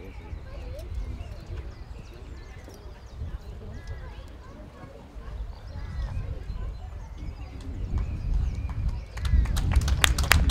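Wind rumbling on the microphone, with faint distant voices. About nine seconds in, a quick run of sharp clicks begins, louder than anything before it.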